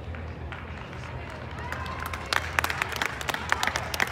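Scattered hand clapping that starts a little over two seconds in and runs on irregularly, over a steady low hum and faint distant voices.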